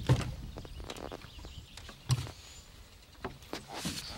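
A caught channel catfish being handled on a boat deck: scattered knocks and rustles. The loudest thumps come just after the start and about two seconds in.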